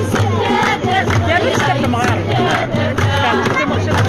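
A group of women singing a traditional Kabyle song together, with hand-held frame drums and hand clapping keeping a steady beat under the voices.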